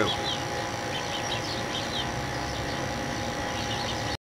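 Outdoor background: a steady drone with faint, scattered bird chirps over it.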